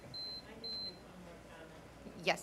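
Two short, high-pitched electronic beeps, each about a quarter second long and about half a second apart, near the start; then quiet room tone.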